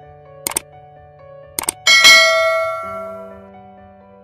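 Subscribe-button animation sound effects: two short clicks, then a bright bell-like ding about two seconds in that rings out and fades, over faint background music.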